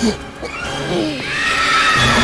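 A brief low cry right at the start, then a high, wavering wail that rises and falls in arcs during the second half, the eerie ghost sound of a horror soundtrack.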